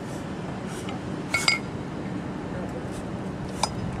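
Two short metallic clinks of paired kettlebells knocking together, the first about a second and a half in and a smaller one near the end, over steady background noise.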